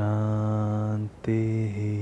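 A man chanting a Hindu mantra in a low, sustained voice. He holds one long note for just over a second, breaks briefly, then holds another note that changes pitch shortly before the end.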